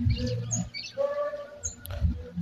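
Wild birds chirping: two short, high, falling chirps and a brief lower call, over a low steady rumble.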